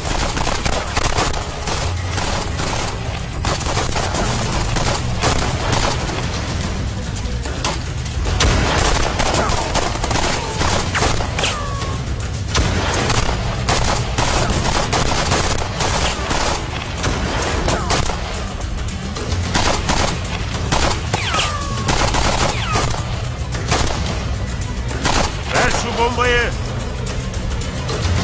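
Rifle fire in a firefight: dense, rapid shots and bursts, many overlapping, with hardly a break.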